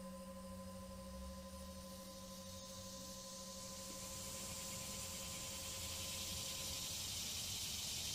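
Faint steady hiss that slowly grows louder, with a faint steady hum of a few held tones that fades out near the end.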